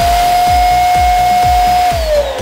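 Electric balloon inflator running steadily as it blows up a latex balloon. Its motor whine holds one pitch and begins to wind down at the very end. Background music with a steady beat plays underneath.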